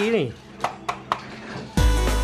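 A few sharp metallic taps, about three within half a second, on the metal body of a toy jeep, showing it is made of metal. Loud background music comes in suddenly near the end.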